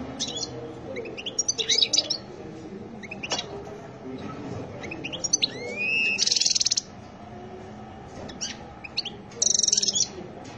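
European goldfinch singing: quick chirps and twittering notes, with a rising note leading into a loud rapid trill about six seconds in and another loud trill near the end.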